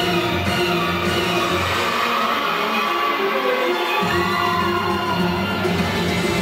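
Music for a rhythmic gymnastics group rope routine. The bass drops out for about two seconds midway and then comes back in.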